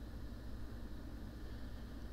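Quiet room tone: a steady low hum under a faint even hiss, with no distinct sounds.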